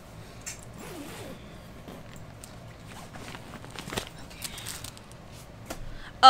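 A zipper on a backpack diaper bag being pulled open, with faint rustling as things inside are handled.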